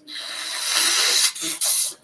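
A loud, harsh hiss with two brief breaks in the second half, like rustling or rubbing close to a microphone.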